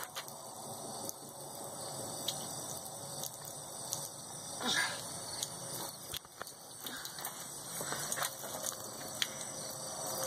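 Garden hose running, water trickling and splashing onto wet concrete, with scattered light clicks and taps. There is one brief louder sound near the middle.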